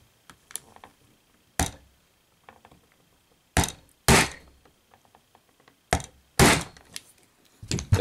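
Hammer taps on a tool held against a die-cast figure's knee pin: about five sharp, separate knocks spread over several seconds, driving the loose pin back in until it is tight.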